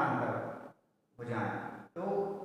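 A man speaking in a short stretch of talk, broken by a brief pause near the middle.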